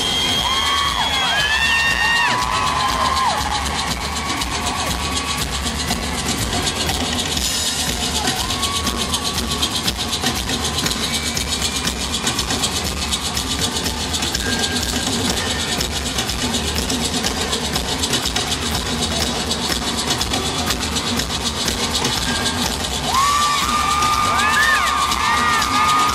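Arena crowd cheering and shouting through a stripped-down break in a live rock song, with maracas shaking under the noise. A bent, held electric-guitar note rings out in the first few seconds. A sustained note and the fuller music come back near the end.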